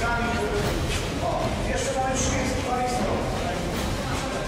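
Indistinct voices of a group of people talking, over steady low background noise.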